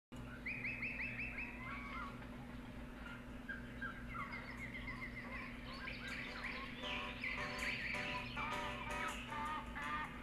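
Birds singing, with series of quick repeated chirps and trills, faint over a steady low hum.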